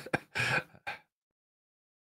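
A man's short breathy laugh: two quick exhaled bursts within the first second.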